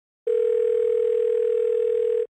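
Telephone dial tone: one steady, unbroken tone that begins a moment in and holds for about two seconds.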